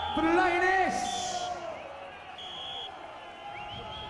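A lull between songs at a live rock gig: a man's voice, loudest in the first second, over crowd noise, with three short, high, steady whistle-like tones.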